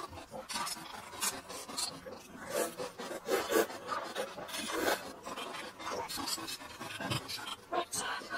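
Close-miked wet chewing and lip-smacking of a person eating noodles in soup, in irregular bursts of short smacks and clicks.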